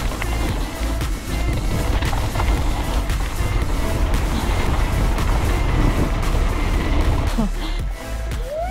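Wind buffeting the microphone and mountain-bike tyres rumbling over a gravel trail on a fast descent, with music underneath. The rumble eases near the end.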